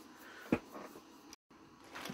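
Quiet room tone with one short sharp click about half a second in, then a brief drop to dead silence where the recording is cut.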